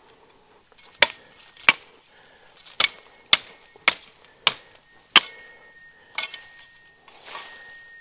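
Cold Steel Special Forces Shovel's sharpened steel blade chopping through brush stems: about eight sharp, irregularly spaced chops, with a brief rustle of leaves near the end.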